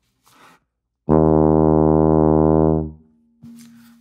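E-flat sousaphone playing a single held low note, about two seconds long, starting about a second in: a plain note by itself, with no multiphonics.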